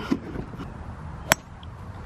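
A golf club striking a ball in a full swing: a single sharp click a little past halfway, over faint background noise.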